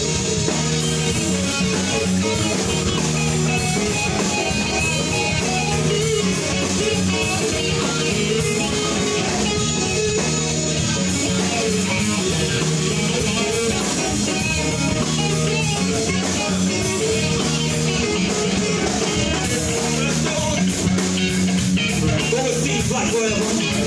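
Live band playing an instrumental passage with no singing: electric guitar out front over a steady drum kit beat.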